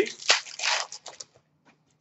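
Trading cards being handled and shuffled through by hand: a few short papery rustles in the first second, then almost nothing.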